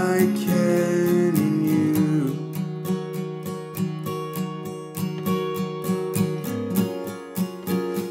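Acoustic guitar strummed in a steady rhythm, with a man's voice holding one sung word that steps down in pitch over the first two seconds before the guitar carries on alone.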